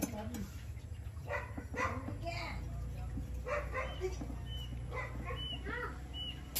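A dog barking several times in short barks, over a steady low hum.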